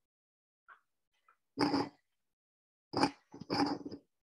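A dog barking: three loud barks in the second half, the first about one and a half seconds in, with faint short yelps before them.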